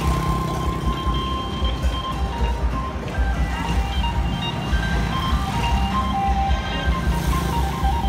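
Music with long held melody notes over a pulsing low beat, mixed with street traffic as motorbikes and a pickup truck pass close by.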